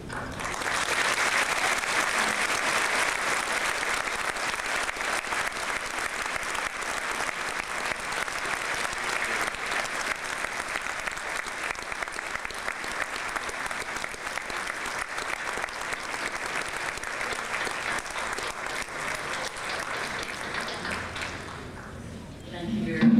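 A hall full of people applauding: a long, steady round of clapping that starts right after the speech ends and dies away near the end.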